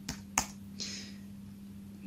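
Two sharp keystrokes on a computer keyboard, about a third of a second apart: the semicolon typed, then Enter pressed to run an SQL query. A faint steady hum sits under them.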